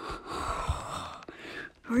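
A man drawing a long, audible breath close to the microphone, lasting about a second, with a few low puffs of air on the mic.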